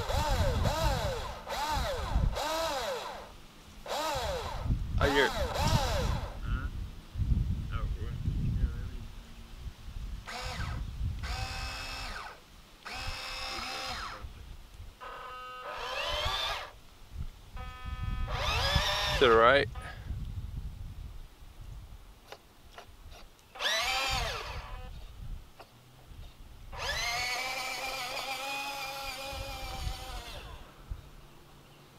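Electric motors of a 1/14-scale radio-controlled dump truck whining in a series of short bursts that rise and fall in pitch as the truck works its dump bed and drives.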